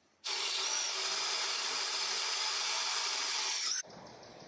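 Power tool working a small steel strip clamped in a bench vise: a steady, high hiss of metal being abraded that starts a moment in and cuts off sharply near the end.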